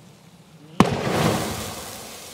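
A pressurised LPG bottle in a burning barrel bursts with one sharp bang just under a second in, followed by the rushing whoosh of a gas fireball that slowly fades.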